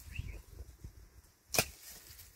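A single sharp crack about one and a half seconds in, with a low rumble near the start.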